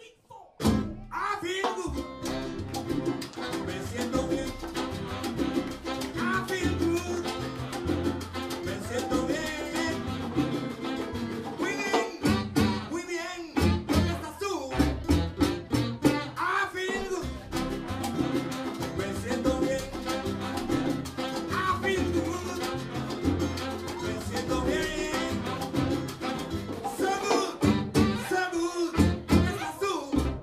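A live son cubano band playing a salsa-style groove on tres, guitar, upright bass, saxophone, bongos and congas. The music comes in suddenly about half a second in and carries on at a steady level.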